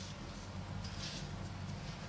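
Quiet room tone with a steady low hum, and a faint light patter of salt sprinkled by hand into a bowl of flour.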